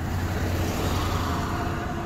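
Road traffic on the street: a motor vehicle going by, a steady rumble of engine and tyre noise.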